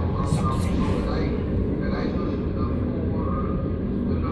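Steady low rumble of a moving train heard from inside the carriage, with indistinct voices talking faintly over it.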